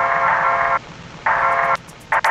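Electronic remix track: a filtered, buzzy synth chord chopped on and off in short blocks, cutting out twice.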